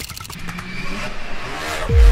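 A rising swell like a revving whoosh builds over the second half and ends in a deep downward-sweeping boom near the end, the kind of riser-and-drop effect used in trailer-style title music.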